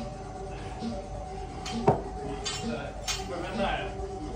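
Barbell clinking as lifters work clean pulls, with one sharp metal clink about two seconds in and lighter ringing clinks after it, over background music with a steady beat.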